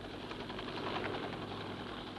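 Helicopter engine and rotor running steadily, a continuous mechanical drone.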